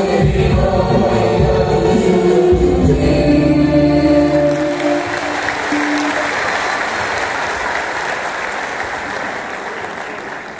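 A choir and two lead singers on microphones, with instrumental accompaniment, sing the end of a song and close on a held note about halfway through. Applause follows and slowly fades.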